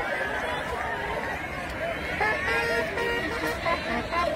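Outdoor crowd of many voices talking and calling at once. From about two seconds in, short steady held tones come through the crowd noise.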